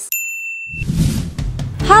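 A single bright ding sound effect that rings steadily for under a second and then stops. A short swish follows, and low background music starts.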